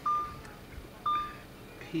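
Short high electronic beeps, two about a second apart, part of an evenly repeating series.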